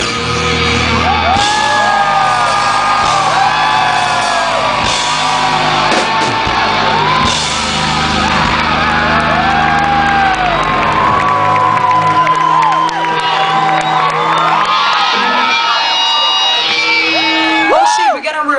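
Live rock band playing loudly on stage, with the audience whooping and shouting over the music. The deepest bass drops out about two-thirds of the way through.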